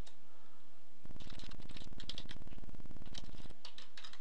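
Computer keyboard typing: a few separate key clicks, then from about a second in to about three and a half seconds in a dense, even run of rapid keystrokes, far faster than normal typing, as when typing is fast-forwarded.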